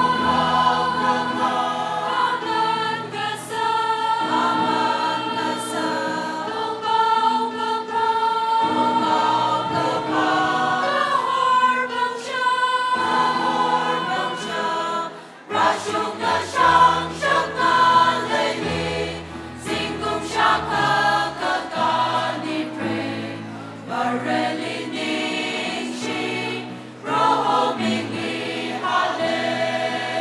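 A choir singing a gospel hymn with instrumental backing and steady bass notes, the music dipping briefly about fifteen seconds in before carrying on.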